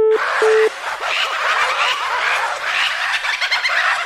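Telephone busy tone beeping twice in the first second as the call is cut off. Then a dense, overlapping chatter of many short, high chirping sounds follows.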